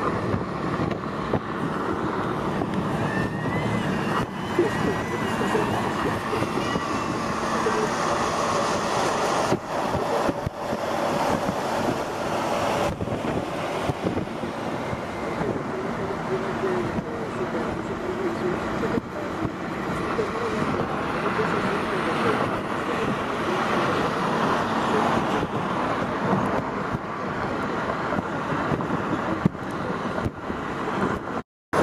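Steady road and engine noise of a moving car, with indistinct voices underneath.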